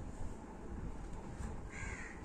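A bird calls once, short, near the end, over a faint steady background hiss.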